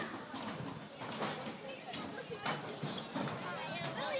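Faint, distant voices of players and spectators carrying across an outdoor sports field, with a couple of soft knocks.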